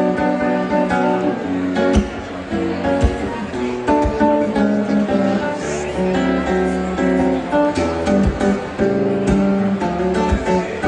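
Fingerstyle acoustic guitar playing a melody over bass notes, with sharp percussive knocks on the guitar body every second or so.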